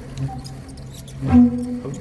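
Pipe organ sounding held notes: a steady low tone under a higher one, with a new note starting with a breathy attack about a second and a half in. Each note is triggered by sensors reading a human volunteer's organs through a set of artificial organs.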